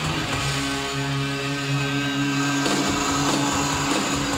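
Heavy metal band playing live: a distorted electric guitar chord is held and droning steadily. The drums and riffing come back in near the end.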